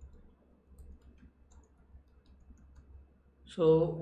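Faint, irregular clicking of a computer keyboard as a terminal command is typed, over a low steady hum.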